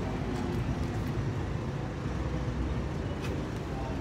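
Street traffic with a bus engine running close by: a steady low rumble.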